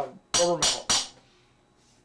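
Three quick hammer blows, about a third of a second apart, on the finned cast-iron cylinder barrel of an air-cooled VW Type 1 engine, tapping the stuck cylinder loose on its studs.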